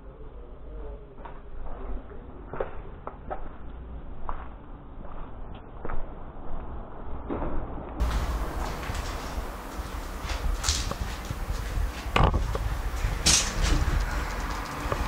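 Footsteps and scuffing over a debris-strewn floor with scattered clicks and knocks, then two sharp knocks near the end, like a metal door or cabinet being handled.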